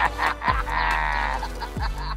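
Background music, with a person's drawn-out, high-pitched cry of amazement for under a second, starting about half a second in.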